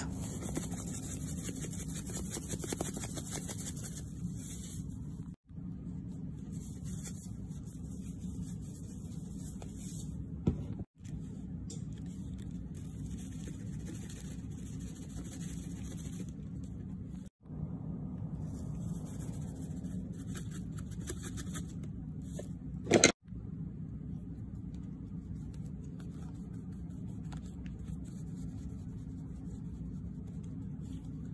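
A steady low background hum with a thin high hiss. It cuts out for a moment four times, with a short sharp sound about ten seconds in and a louder brief one just before the last cut-out.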